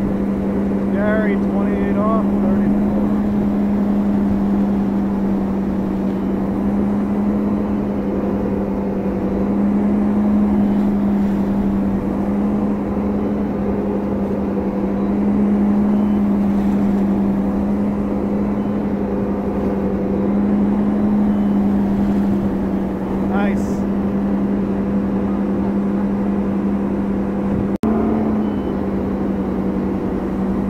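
Ski boat's engine running at a steady pull speed of about 34 mph while towing a slalom water skier, a constant even drone with the rush of water from the hull and wake.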